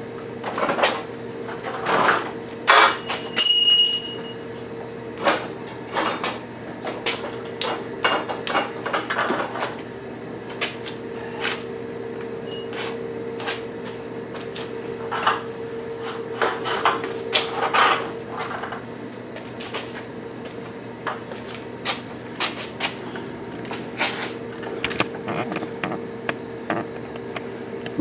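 Steel gantry-crane parts knocking and clanking irregularly as they are fitted together, with one ringing metal clang about three seconds in. A steady hum runs underneath.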